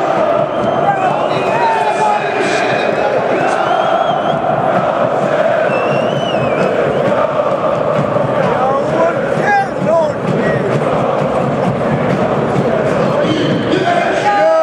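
Large football crowd in a stadium chanting together, loud and steady throughout, with a few single voices standing out above it.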